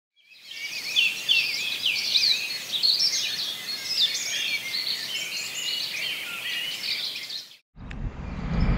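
Songbirds singing, many overlapping chirps and whistles over a faint steady hiss. It fades in at the start and cuts off abruptly near the end.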